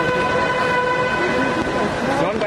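A vehicle horn held in one long, steady note that fades out in the second half, with voices nearby near the end.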